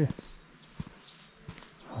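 A few faint, irregular footsteps on a dirt lane, with short knocks spaced well apart.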